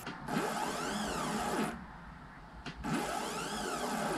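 Stepper motor jogged twice by a GRBL controller. Each move is a whine that rises in pitch as the motor speeds up and falls as it slows to a stop, lasting about a second and a half, with a short pause between the two. The moves show the new controller shield and driver turning the motor.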